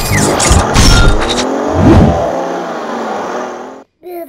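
Loud sound-effect sting with low thumps and engine-like revving sweeps rising and falling in pitch, then a fading rush that cuts off abruptly near the end.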